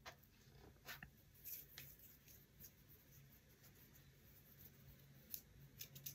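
Near silence with a faint steady low hum and a few faint clicks and taps from a pair of wooden chopsticks being picked up and handled.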